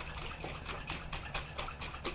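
Oil-and-vinegar salad dressing sloshing in a lidded glass jar that is being shaken by hand, in quick, uneven splashes. The shaking mixes the oil and vinegar with ground mustard as an emulsifier.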